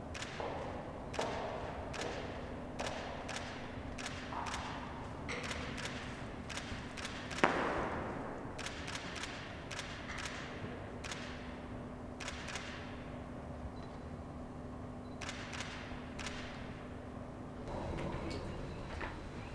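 Scattered sharp clicks and taps echo in a large stone hall, with one louder knock about seven and a half seconds in. A faint steady hum runs underneath.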